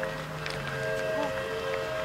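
A distant train whistle holding one long, steady multi-note chord.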